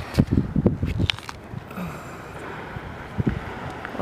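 Wind buffeting the microphone, with a cluster of short knocks and rustles in the first second or so and a single knock about three seconds in.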